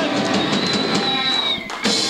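A pop-punk band playing live and loud. A thin high tone holds for about a second in the middle, then the sound drops out briefly and the band hits back in just before the end.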